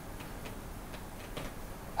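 Faint ticks of a stylus on a pen tablet as a word is handwritten, over low steady room hiss.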